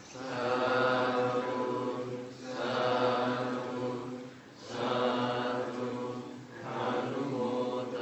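Buddhist chanting closing a Dharma talk: low voices held on a steady pitch in four long phrases, with short breath pauses between them.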